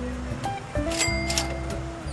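Background music: sustained held notes over a low bass, with a bright high accent about a second in.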